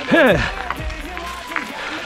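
A man's voice gives a short exclamation that falls in pitch near the start, then background music carries on quietly.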